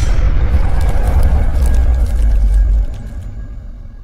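Cinematic logo-intro sound effect: a deep rumble with crackling sparkle on top, dropping away a little after two and a half seconds and then fading out.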